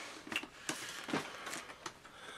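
VHS tapes in plastic cases being handled and picked up: a few light, separate clicks and rustles.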